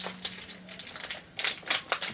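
Small plastic toy packaging and mini toys being handled and opened on a table: a scatter of light clicks and crinkles, bunched in a quick run after about a second and a half.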